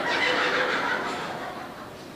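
An audience laughing, the laughter fading away over about a second and a half.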